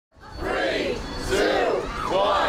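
A crowd of people shouting together in unison, two drawn-out shouts one after the other.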